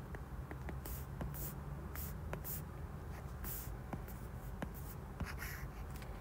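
Stylus tapping and scratching on a tablet screen while drawing dots and short pen strokes: a string of brief, separate scratches and light clicks.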